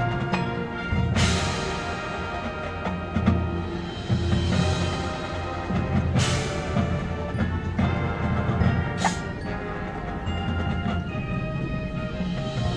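High school marching band playing live on the field: sustained brass and wind chords over drums and front-ensemble percussion, with three crashes about a second in, around six seconds and around nine seconds.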